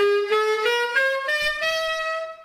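Alto saxophone playing an ascending run of six notes in its upper octave, with the thumb octave key pressed. The last note is held.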